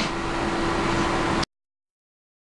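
A steady hiss with a low, even hum, cut off abruptly to dead silence about one and a half seconds in.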